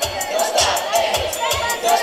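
Crowd of girls shouting and singing along over dance music with a steady beat.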